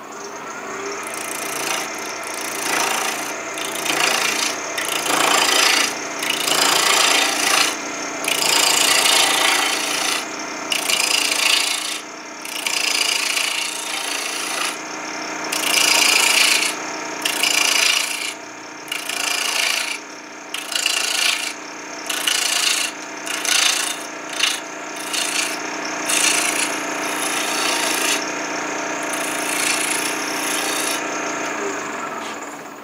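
A skew chisel cuts a freshly cut green apple branch spinning on a wood lathe, with the lathe's steady hum underneath. The cuts come in repeated noisy strokes of a second or two with short breaks between them.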